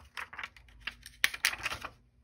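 Cardstock cards being handled and set down on a cutting mat: a run of short taps and paper rustles, loudest in a cluster between about one and two seconds in.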